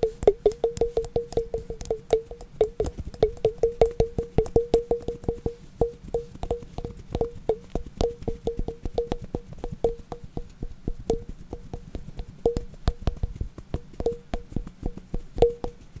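Rapid tapping on a hard, hollow object, each tap ringing briefly at the same pitch. It runs at about four or five taps a second for the first several seconds, then slows and thins out to scattered taps.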